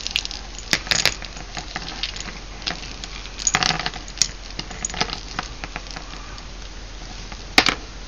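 Metal jingle bells on a twisted-wire strand clinking and rattling against each other and the wire as they are handled and untangled, in scattered irregular clicks with a few louder bursts of jingling.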